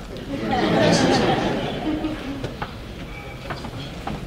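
Audience laughing and chattering, swelling about a second in and then dying down.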